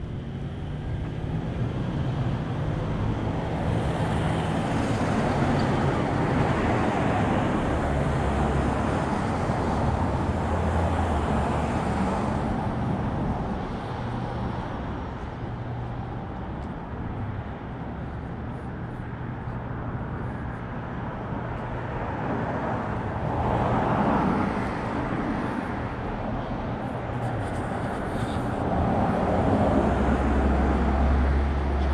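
City street traffic: cars passing along the avenue with a steady low rumble. It swells as vehicles go by, loudest in the first half and again near the end.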